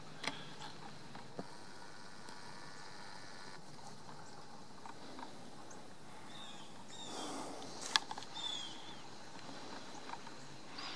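Quiet outdoor ambience with a steady low hiss, broken by a few short, falling bird chirps about two-thirds of the way in and a few sharp clicks from handling of the moving camera.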